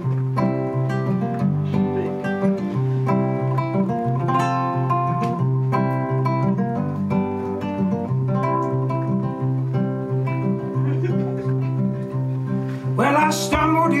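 Acoustic guitar picked briskly: a steady, repeating bass note under quick treble notes. A man's singing voice comes in near the end.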